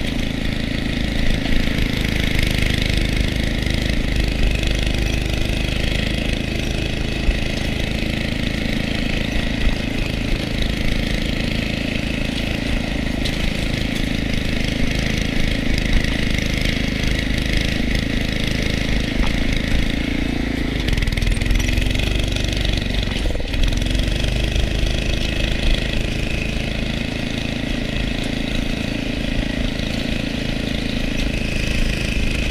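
Small go-kart engine, about 5–6 hp, running steadily while the kart is driven. About two-thirds of the way through, the revs drop briefly, then pick back up.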